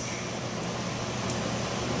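Steady background noise of the hall and sound system in a pause between words: an even hiss with a faint low hum.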